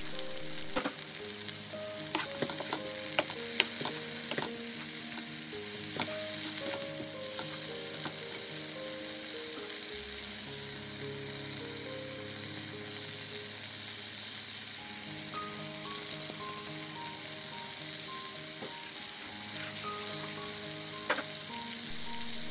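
Chopped kimchi sizzling steadily as it stir-fries in a frying pan, with a few sharp clicks of the spatula against the pan in the first few seconds and once more near the end.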